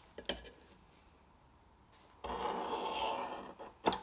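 A steel scriber drawn along a steel rule across a steel plate, scratching a marking line in one scrape about a second and a half long. A light metal tap comes shortly before it and another just after.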